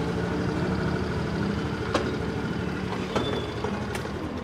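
A motor vehicle engine running steadily at a low idle, with two short clicks, one about two seconds in and one about three seconds in.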